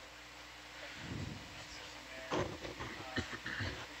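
Control-room background of the ROV dive audio: a steady low electrical hum, with a sharp click about two seconds in and faint, indistinct voices near the end.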